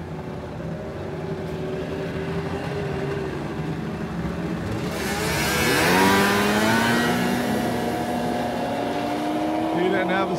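Ski-Doo Plus X two-stroke snowmobile engines running at the drag-race start line, then launching about five seconds in. The sound rises sharply to its loudest as a sled goes by, and the pitch keeps climbing as the sleds accelerate away down the ice.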